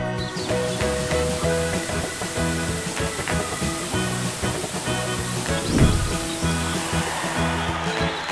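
Steady hiss of water spraying from a fire hose nozzle, stopping near the end, over cheerful background music. A brief low rumble about six seconds in.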